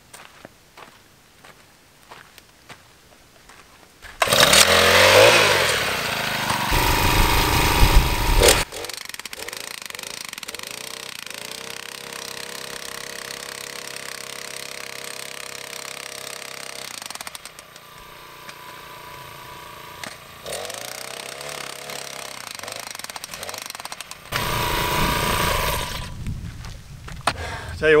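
Petrol-powered star picket driver: its small engine revs up about four seconds in and hammers a steel star picket into the ground for about four seconds, then runs more quietly, rising and falling with the throttle. It hammers again for about two seconds near the end.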